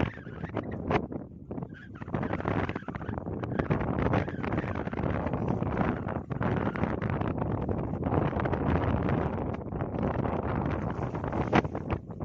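Wind buffeting the microphone on an open fishing boat, a dense rushing noise that rises and falls, with one sharp knock near the end.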